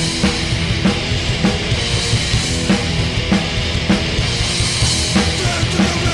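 Punk rock song: distorted electric guitars and bass over a drum kit, with a heavy drum hit landing about every 0.6 seconds under a wash of cymbals.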